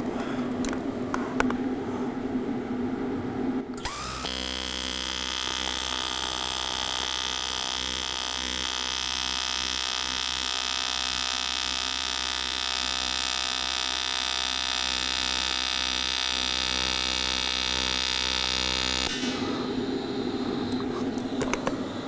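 AC TIG welding arc on aluminum plate: it strikes about four seconds in with a sharp crack and then gives a steady electric buzz for some fifteen seconds before cutting off. Light handling clicks come before the arc starts and after it stops.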